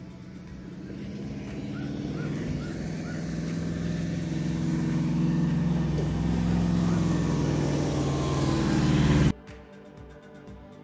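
Dramatic build-up sound effect: a low, layered drone that swells steadily for about nine seconds, then cuts off suddenly.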